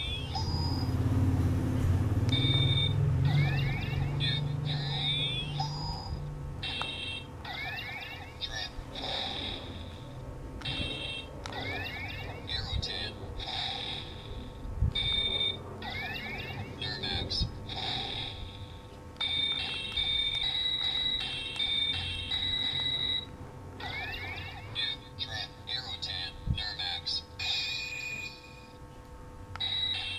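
Power Rangers Mystic Force DX Mystic Morpher toy phone playing its electronic sound effects from its small built-in speaker as its keypad buttons are pressed one after another. It sounds as short beeps, quick rising chirps and brief stepped electronic tunes, each starting and stopping with a press.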